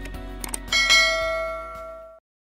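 Background music, then a couple of mouse-click sound effects about half a second in. Just under a second in comes a bright bell chime, the notification-bell sound of a subscribe-button animation, which rings and slowly fades.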